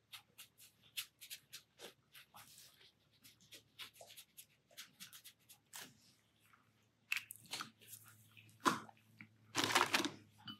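Faint, quick scratching and tapping of a pen tip on sketchbook paper, with several short strokes a second. In the last three seconds come a few louder knocks and rustles as pens are handled on the desk.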